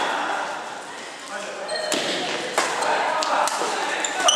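A badminton rally in a large, echoing hall: several sharp racket hits on the shuttlecock from about two seconds in, with brief shoe squeaks on the court floor, over a background of voices.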